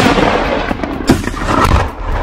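Explosion: a rumbling, crackling blast, with another sharp bang about a second in.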